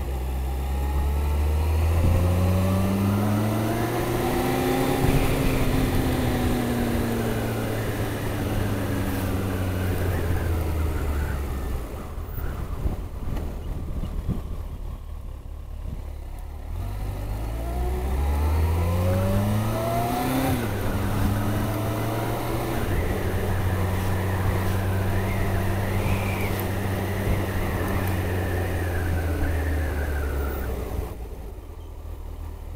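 Kawasaki ZX-14 sport bike's inline-four engine under way. It climbs in pitch for a few seconds, then eases off and drops to a low, ragged level for several seconds near the middle. It then pulls up again, with a sudden drop in pitch about two-thirds of the way through like an upshift, and settles into a steady cruise.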